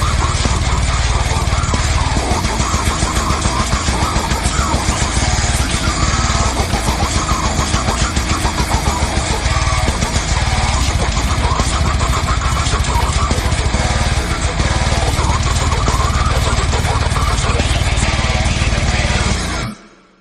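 Slam metal band playing at full volume, a dense, unbroken wall of sound with a heavy low end. It cuts off abruptly just before the end: the song's final stop.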